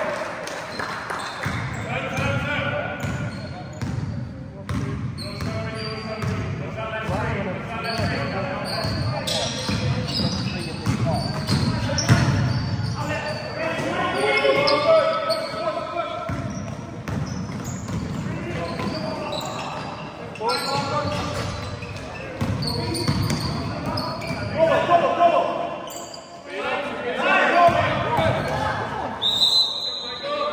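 Basketball game in play in a sports hall: the ball bouncing on the court amid players calling out, echoing in the hall.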